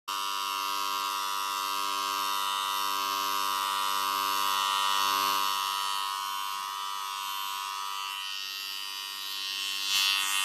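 Corded electric hair clippers running with a steady buzz over a close-cropped head, the tone thinning slightly near the end.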